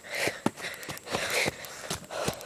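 Footsteps on a dirt forest trail, a few uneven steps a second, with soft rustling and breathing between them.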